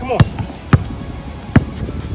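A basketball dribbled on an asphalt court: three sharp bounces in two seconds.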